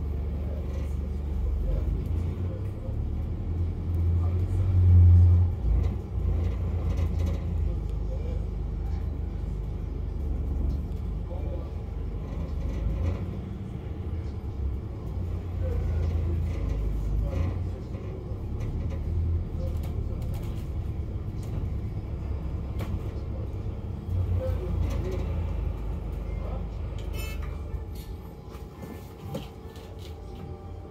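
Low rumble of a double-decker bus's engine and running gear, heard inside the upper-deck cabin as the bus moves through traffic, swelling loudest about five seconds in.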